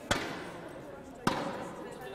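Two sharp knocks about a second apart, each followed by a hall echo, over a low murmur of voices.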